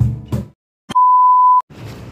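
A single loud, steady electronic beep lasting under a second, an edited-in bleep tone, preceded by music with a drum beat that stops abruptly about half a second in and a moment of dead silence.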